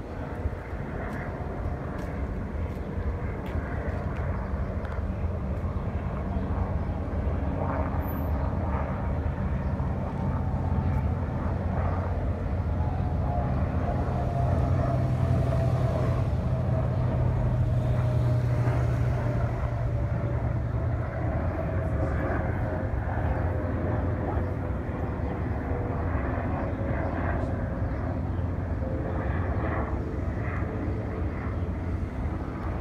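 An airplane flying over: a steady engine rumble swells to its loudest about halfway through, while a thin whine slowly falls in pitch through the second half.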